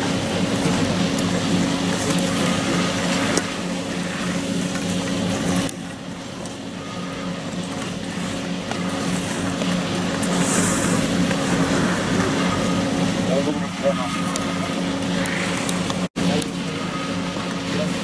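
A steady low mechanical hum throughout, with a noisy outdoor haze over it; the sound drops in level about six seconds in and cuts out for an instant near the end.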